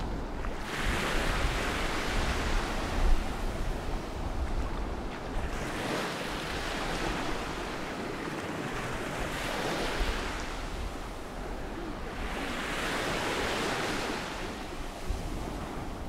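Small Mediterranean waves breaking and washing up a sand-and-pebble shore, the surf hiss swelling and fading several times over a few seconds each. A low wind rumble sits on the microphone underneath.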